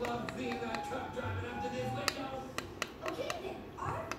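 Butter knife tapping and scraping against pressed highlighter powder in its small metal pan as the broken powder is cut into smaller pieces: a string of sharp, irregular taps. Music plays faintly in the background.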